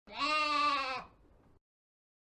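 A single sheep baa, about a second long, its pitch wavering slightly.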